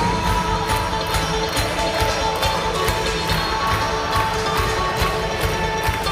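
A live rock band playing in an arena: a steady drum beat under sustained held notes.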